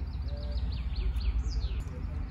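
A songbird singing a fast series of short, high, falling notes, about seven a second, ending with a longer downward-sliding note near the end.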